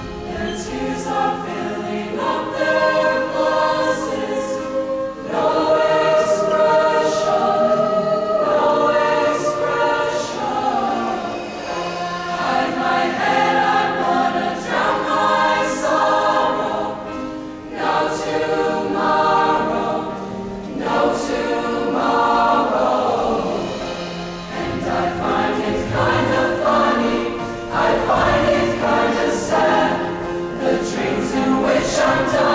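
Mixed-voice show choir singing in multi-part harmony, holding chords phrase by phrase with short breaks between phrases.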